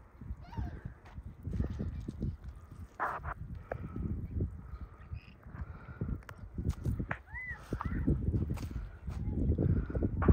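Footsteps crunching irregularly on a dirt and mud shoreline, with knocks of handling noise and a few faint bird chirps, one arched call about seven seconds in.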